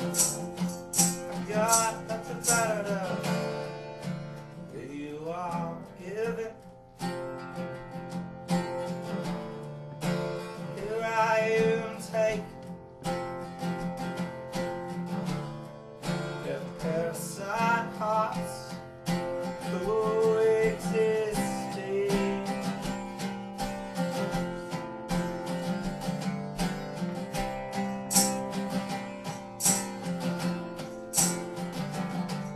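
Acoustic guitar strummed in a steady rhythm in a live solo performance, with a voice singing over it at times.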